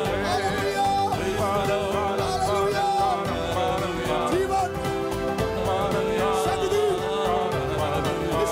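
Worship music: a voice singing over held instrumental chords and a steady beat.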